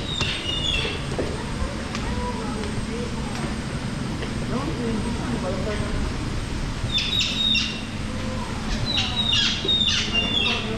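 Small birds giving short, high chirps in a few quick clusters near the end, over a steady low hum and faint voices of other people.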